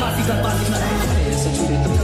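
Remix mashup music with deep bass notes, two of which slide down in pitch about one and two seconds in.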